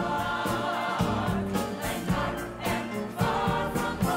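Choir singing with instrumental accompaniment, a steady bass line moving under the voices.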